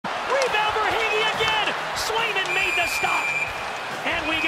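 Ice hockey game sound: voices over arena noise with a few sharp knocks, then a referee's whistle blown as one steady high tone lasting about a second and a half near the end.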